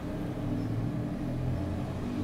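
A steady low mechanical rumble with a droning hum, like an engine or motor running in the background.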